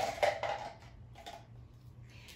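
Dry-erase markers clicking and rattling against one another as one is picked out of a handful, with a sharp click in the first half second and a fainter one a little past a second in. A low steady hum runs underneath.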